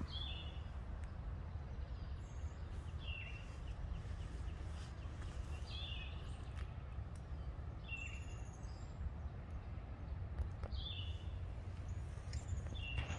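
A bird calling repeatedly: short high notes, each dropping slightly in pitch, about every two to three seconds, over a steady low background rumble.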